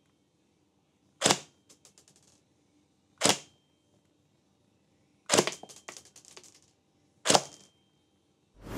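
Silverback MDR-X Micron airsoft electric rifle (AEG) firing four single shots about two seconds apart into a chronograph. Each shot is a sharp crack, and the first and third are followed by a brief light rattle.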